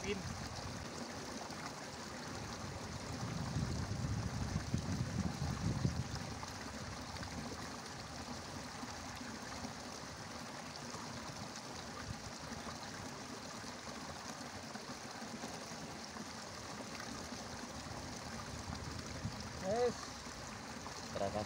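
Steady trickle of water running in a small muddy field ditch. A louder low rumble comes in for a few seconds near the start.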